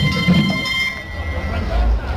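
Carnival street drum ensemble playing hand drums, with a held high tone over the drumming that stops about a second in, and the low drum sound growing stronger near the end.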